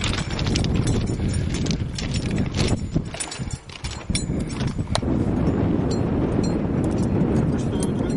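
Footsteps of boots crunching on the gravel ballast of a railway track, a quick uneven run of crunches over a steady low rumble, thinning out after about five seconds.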